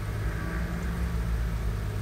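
Steady low background hum of room noise, with no distinct event.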